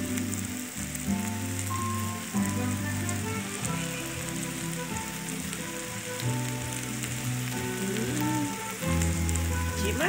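Beef steaks and onions sizzling steadily in a disco (plow-disc griddle), a continuous frying hiss. Background music plays with it, held notes changing every second or so.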